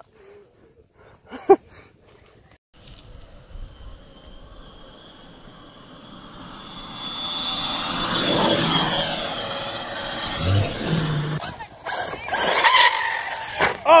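Electric RC cars racing past at speed: the motor and drivetrain whine swells to a peak and then drops in pitch as they go by.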